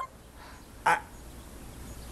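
A man's single short, hesitant "I..." about a second in, over quiet room tone with a low hum.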